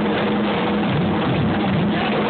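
Drum kit solo played as a dense, continuous roll with cymbals, a steady wash of sound with no separate beats standing out.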